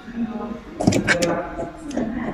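People talking, with a few sharp clicks about a second in and again near the end.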